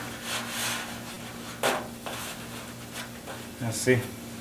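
Hands rubbing and pressing a small piece of sugar-cookie dough against a floured wooden tabletop, with one short knock about one and a half seconds in.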